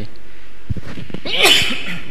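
A man coughs once, sharply, into his hand about one and a half seconds in.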